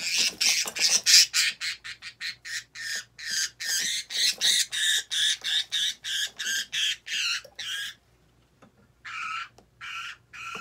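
Budgerigar squawking in alarm as a hand reaches into its cage: a fast run of harsh calls, about three a second, breaking off about eight seconds in and starting again near the end.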